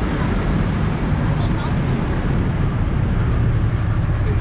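Steady low rumble of a passenger jeepney's engine mixed with street traffic.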